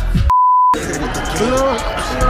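A single steady high-pitched censor bleep, about half a second long, starting a third of a second in, with all other sound muted under it. Music and voices run before and after it.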